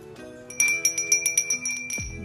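A small white bell ornament rung by hand: starting about half a second in, a quick run of a dozen or so strikes, each ringing with the same high, bright tone.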